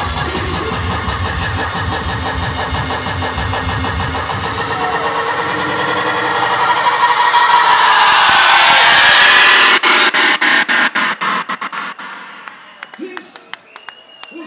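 Hardstyle track over a club PA: a pounding kick and bass, then a rising noise sweep builds to a peak. About ten seconds in the bass cuts out and the sound is chopped into a fast stutter, which falls away near the end.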